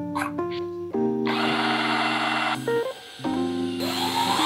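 Hand drill boring a twist bit into a pine block, a rasping cut heard about a second in and again near the end, over background keyboard music.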